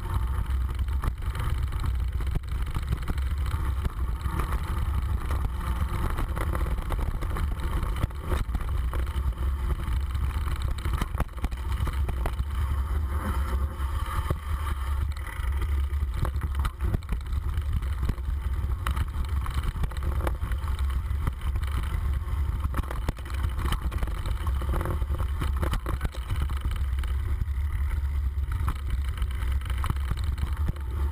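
Steady low rumble of wind and vibration on an action camera moving fast down a rough dirt forest trail, with frequent short knocks and rattles from the bumps.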